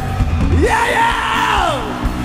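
A voice through the PA yells one long call: it rises sharply in pitch, holds, then falls away. Under it the live rock band's instruments sound low and steady before the song starts.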